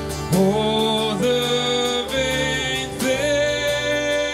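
A man singing a slow hymn line into a microphone while strumming an acoustic guitar, each held note giving way to the next about once a second.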